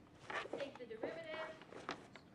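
A person's short wordless vocal sound, its pitch dipping and then rising and holding, followed by a single tap near the end.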